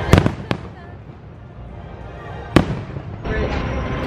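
Fireworks shells bursting: a quick cluster of sharp bangs at the very start, then a single loud bang about two and a half seconds in.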